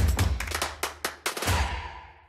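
Logo sting sound effect: a quick run of sharp percussive clicks and hits over a low bass rumble, fading out in the second half as a faint high tone rings.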